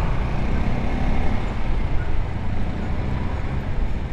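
Motorcycle engine running steadily at low city speed, a continuous low hum with road and traffic noise around it.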